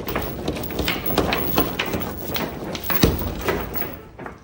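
Heavy steel chain and padlock rattling and clanking as the chain is yanked by hand against the locked cabinet doors, testing that it holds. Irregular clanks throughout, the loudest about three seconds in.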